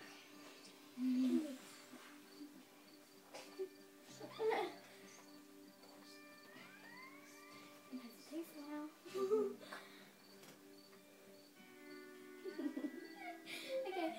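Karaoke backing track playing the instrumental intro of a pop song, with held notes and a few sliding notes. Short bursts of girls' voices break in a few times over it.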